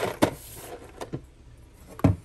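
Groceries handled on a countertop: a sharp knock about a quarter second in as a cardboard pasta box is laid down, then a fainter click about a second later as a can is picked up.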